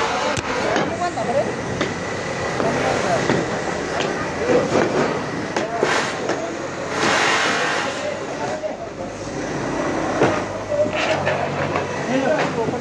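Several men's voices talking over one another without clear words, with rough rustling and handling noise close to the microphone.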